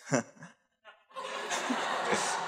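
Audience laughing in a hall: a broad swell of many voices laughing together starts about a second in, just after a brief single chuckle.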